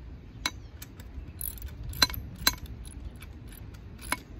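Ratcheting socket wrench tightening a stainless steel bolt on a steel rail clip: a few sharp metallic clicks and clinks, the loudest about two seconds in and again half a second later.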